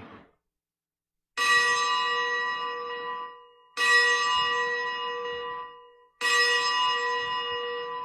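Altar bell struck three times, about two and a half seconds apart, each ring starting sharply and dying away over about two seconds. This is the consecration bell marking the elevation of the host at Mass.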